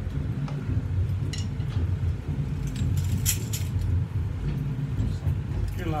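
A few scattered metallic clinks and jingles from handheld samba percussion being handled, a jingle shaker and tamborims, over a steady low room rumble.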